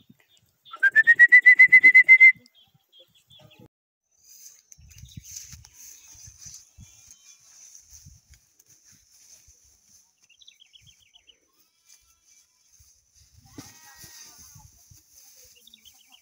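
A horse whinnying once about a second in: a loud, high call that rises and then holds with a fast tremble, lasting about a second and a half. After it comes a faint, steady high hiss with soft scattered rustles and thumps while horses graze.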